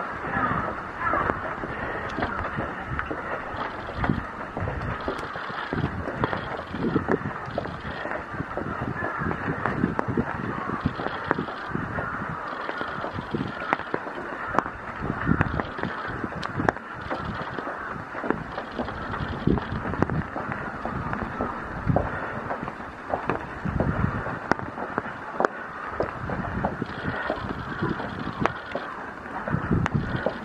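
Walking footsteps and handheld-camera bumps, irregular low thumps, on a wet stone path and stone stairs, over a steady outdoor background hiss of light rain.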